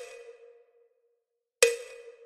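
Two sharp metronome-like clicks about 1.8 s apart, each with a brief ringing tail, in a rest between practice phrases.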